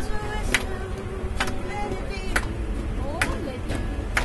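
Hand claps keeping a steady beat, about one a second, over the low rumble of a moving train carriage, with music and voices underneath.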